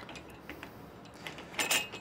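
A few faint small clicks of gear being handled, with a brief, louder sharp sound near the end.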